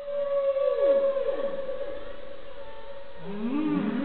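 Whale song: a long held tone with calls that slide down in pitch about a second in, then rising, swooping calls near the end.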